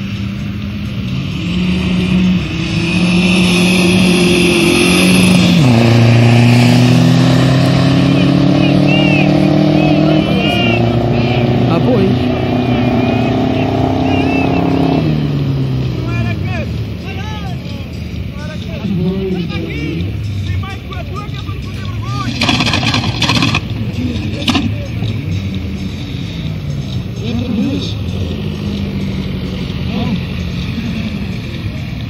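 A car accelerating hard down a drag strip: the engine climbs in pitch, drops once at a gear change about five seconds in, then climbs steadily again until the note cuts off about fifteen seconds in. Crowd voices follow.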